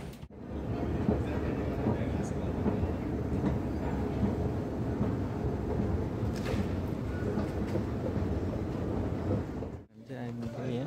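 Steady mechanical rumble of a moving escalator, with faint voices in the background.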